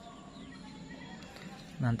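Faint steady background ambience with no distinct event, then a man's voice begins near the end.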